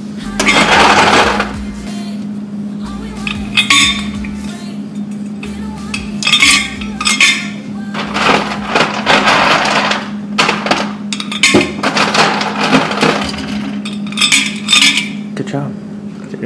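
Ice cubes dropped into an all-metal stainless steel water bottle, clattering and clinking loudly in irregular bursts, about six times over.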